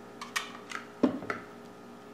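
Light clicks and taps of a small glass measuring cup against the rim of a glass canning jar as the last of the agave is scraped in, with one fuller knock about a second in.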